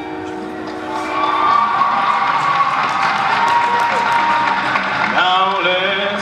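A music backing track holds a chord, then a large audience claps and cheers loudly over it from about a second in. A man's voice comes in near the end.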